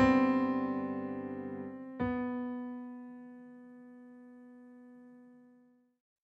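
Electric piano ending a song: a closing chord fades with a pulsing tremolo, then a last note struck about two seconds in rings out and dies away to silence near the end.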